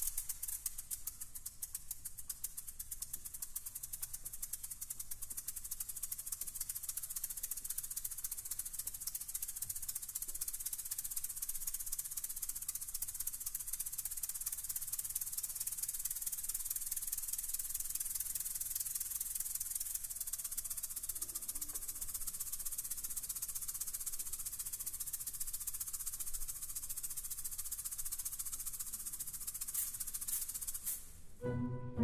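A pair of Venezuelan maracas played solo and unaccompanied: a fast, unbroken rattle of dense, rapid strokes, bright and even in level throughout.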